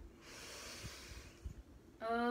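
A woman drawing a long, deep breath in, a soft breathy hiss lasting about a second and a half, taken just before chanting a mantra.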